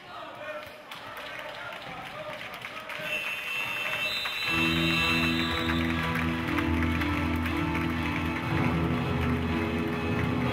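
Indistinct voices and arena noise from a sports hall, then background music fades in about three seconds in and becomes the loudest sound about halfway through, with long held chords over a deep bass.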